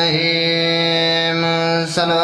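A man's voice chanting a religious recitation into a microphone, holding one long, steady note; a brief sharp noise and a dip in loudness come near the end as the note breaks off.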